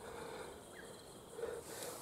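Faint outdoor ambience with a quiet, steady hum of insects, and a brief soft sound about one and a half seconds in.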